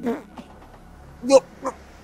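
A man's choking, gasping cries: a short one at the start, then two more past the middle, the first of those the loudest.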